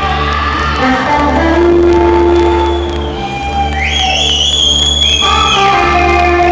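Live rock band playing: steady sustained bass notes under a high lead note that slides up a little past halfway and holds for about two seconds.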